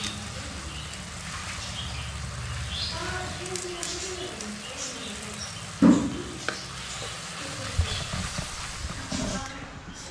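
Onion-tomato gravy sizzling in a wok while a wooden spatula stirs it, as the noodle seasonings go in. There is a sharp knock about six seconds in, followed by a few lighter clicks.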